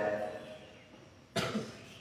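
A man's single short cough about a second and a half in, close to the microphone, after a quiet pause between spoken phrases.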